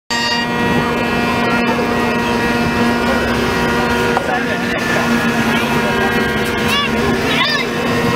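Great Highland bagpipe sounding a steady, unchanging drone chord. A few short, high, rising-and-falling calls come over it near the end.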